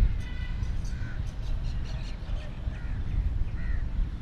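Crows cawing: one strong call just after the start, then several shorter calls, over a steady low rumble.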